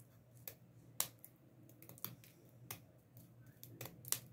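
Small scissors snipping through a metal rhinestone mesh chain: several sharp, separate clicks about a second apart.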